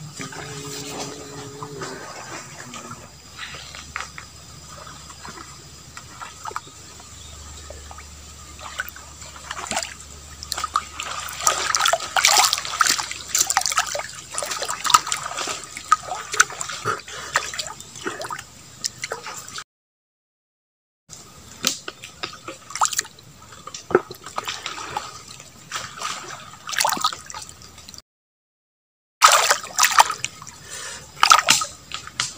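A hooked catfish thrashing and splashing in a small pool of shallow water. The splashing starts in earnest about ten seconds in and goes on in irregular bursts, with the sound cutting out completely twice for a second or so.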